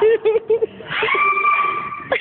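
A person laughing in quick short bursts, then one long high-pitched scream held for about a second.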